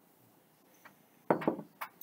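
Near silence in a small room, then brief mouth sounds of a sip from a glass of beer: a short slurp about a second and a half in and a small click just before the end.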